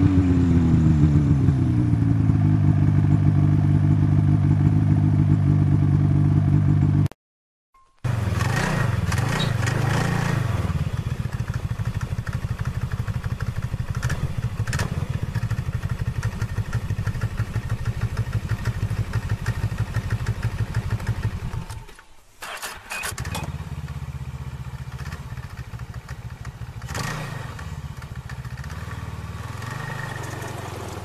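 Snowmobile engines in several separate recordings joined back to back. The first engine's pitch falls and settles into a steady run, then cuts off about seven seconds in. After a second of silence another snowmobile runs steadily with a fast, even pulse, and after a brief dip just past twenty seconds a third recording of an engine running follows.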